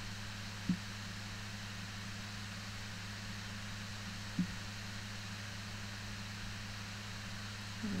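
Steady low electrical hum with an even background hiss from the recording setup. Two short faint blips come about a second in and just past four seconds.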